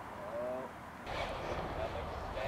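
A brief voiced call from a person about half a second in. Then, from about a second in, a louder rushing background noise with faint bits of voice in it.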